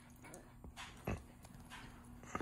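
Faint scuffling and soft thumps of a puppy's paws scrambling on carpet during play, with one short, louder thump about a second in.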